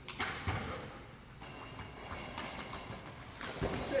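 Goalball in play on a hardwood court: a couple of sharp knocks early, then near the end heavy thuds as the thrown ball hits the floor, with a few thin high rings from the bells inside it.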